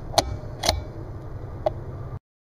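Bolt of a 17 HM2 bolt-action rifle being worked after a shot: three sharp metal clicks, the loudest just after the start, a longer one about half a second later and a lighter one near the end.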